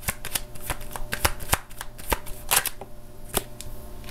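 A tarot deck being shuffled by hand: a quick, irregular run of card clicks and flutters that thins to a few single clicks near the end.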